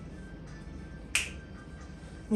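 A single sharp finger snap a little past halfway, over a faint low room hum.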